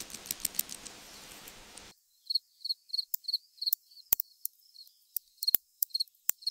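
Scratchy clicking over a faint hiss, then, about two seconds in, an abrupt change to cricket chirping: short, high-pitched chirps about three times a second, with sharp clicks among them.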